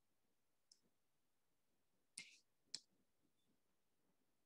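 Faint clicks of a stylus tapping on a tablet's glass screen over near silence: one small tap about a second in, then two louder taps about half a second apart past the middle.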